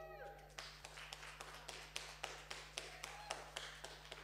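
The last synthesizer notes of an electronic music set fade out, then faint, irregular hand claps from a few people follow, several a second.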